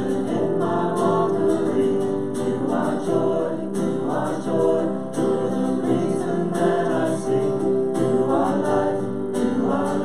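A contemporary worship song performed live: several women's voices sing together, accompanied by piano and guitar.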